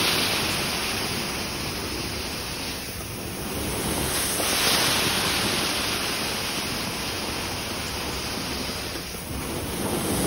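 Carpet-cleaning extraction wand drawn across carpet: a steady rushing hiss of spray and strong suction that swells and eases with each stroke of the wand, about twice.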